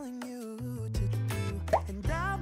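Background pop song with a steady beat and bass, in a gap between sung lines.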